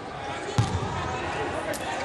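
Volleyball rally in an indoor hall: a sharp thump of a hand striking the ball about half a second in, and a lighter smack near the end.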